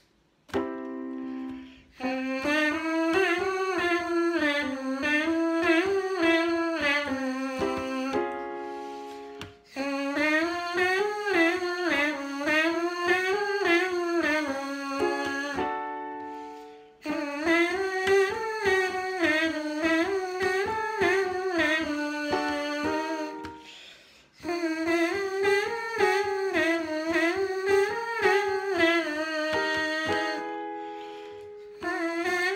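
A trumpet mouthpiece buzzed on its own, playing quick legato-tongued runs that rise and fall like scales. There are four phrases with short breaks between them, and a few held notes in the gaps.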